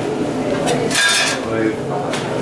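Metal kitchenware clattering, loudest in a short burst about a second in, with people talking in the background.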